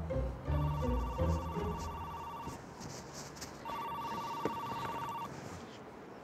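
A mobile phone ringing twice, each ring a steady two-tone electronic ring lasting about two seconds, with a short gap between.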